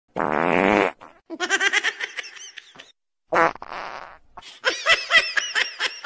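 Two farts: a long buzzy one near the start and a shorter one about three and a half seconds in, each followed by bursts of laughter.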